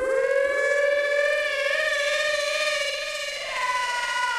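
A siren-like synth tone in the outro of a house track. It slides up and holds one slightly wavering pitch with no beat under it, then moves higher near the end.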